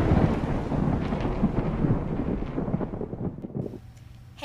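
Deep rolling rumble, like thunder, fading steadily and dying away near the end.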